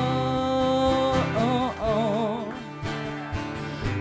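Live country song with acoustic guitar accompaniment: a long held sung note, then a wavering vibrato line in the second second.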